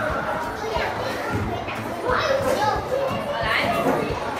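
A classroom full of young schoolchildren chattering and calling out at once, many small voices overlapping in a large, echoing room.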